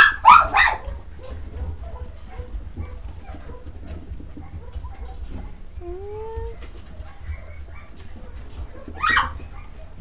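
English Cocker Spaniel puppies whimpering and yipping: a loud yip right at the start, a short rising whine about six seconds in, and another yip near the end, with faint whimpers in between.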